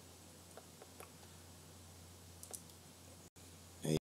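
A few faint, scattered computer clicks at the desk over a steady low electrical hum.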